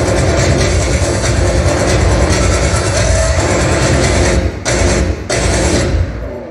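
Loud electronic dance music playing over a PA system, with a heavy steady beat. It briefly drops out twice near the end.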